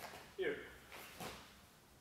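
Speech: a man says one short word, with a faint brief sound about a second later.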